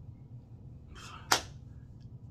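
A quick, sharp sniff through the nose at perfume on the wrist about a second in, ending in a short loud spike. A steady low hum sits underneath.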